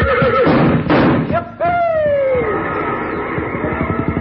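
Horse whinnying, a sound effect: one long call fading out about half a second in, then a second that falls in pitch, over a quick, even run of short strokes.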